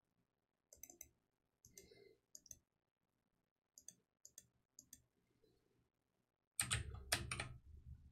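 Computer keyboard keys clicking in short scattered runs of typing, with a louder burst of clicks about a second before the end.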